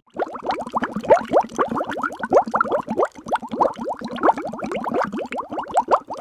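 Bubbling water sound effect: a dense, continuous stream of short rising bloops, many a second.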